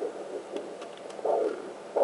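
Fetal Doppler speaker playing the placental sound: slow whooshing pulses of blood flow, an echo of the mother's own heartbeat, about one swell a second.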